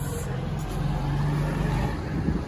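Low, steady engine hum over street rumble, like a vehicle running nearby.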